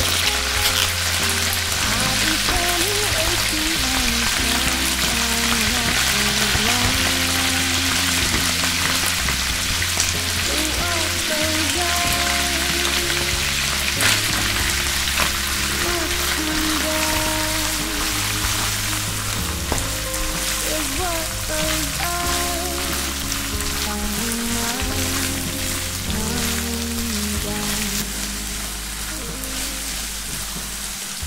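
Oil frying in a pan with a steady, dense sizzle, first tuna, garlic and dried red chillies, then natto being stirred and pushed around with a silicone spatula in the second half. Background music with a bass line plays underneath.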